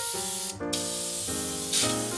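Aerosol can of hydro-dipping activator spraying onto the film floating in a tub of water: two long hisses with a short break about half a second in.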